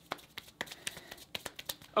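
Hands rubbed together briskly, skin brushing against skin in a quick run of small dry scuffs and clicks.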